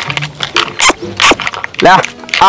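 A goat bleating near the end, over background music with a steady low tone and a few short sharp noises before the bleat.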